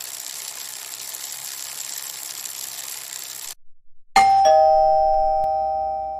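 A steady hiss for about three and a half seconds, then a two-note ding-dong doorbell chime, high note then lower, ringing out slowly.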